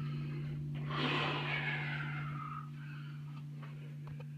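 A person breathing out heavily close to the microphone, one long breath starting about a second in and fading, over a steady low hum.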